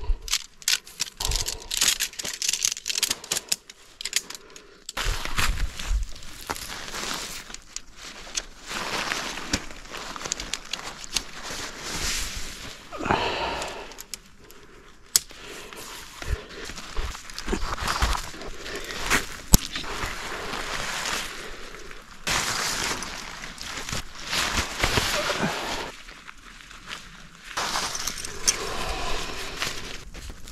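Nylon tent fabric rustling and crinkling as it is handled and spread out, with scattered sharp clicks of tent-pole sections being fitted together.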